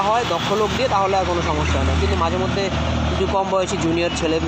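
A man talking in Bengali, with a low vehicle rumble underneath for about two seconds in the middle.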